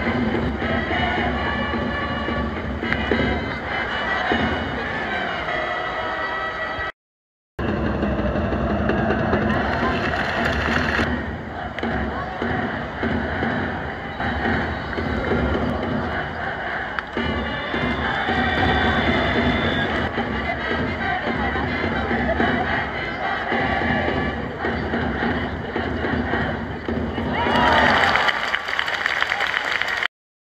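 Music playing over a baseball stadium's PA system with crowd noise underneath, cutting out briefly about seven seconds in and swelling near the end.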